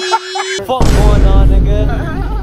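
Edited-in comedy sound effects. A held tone cuts off about half a second in, then a loud, deep boom with heavy bass rolls straight into music.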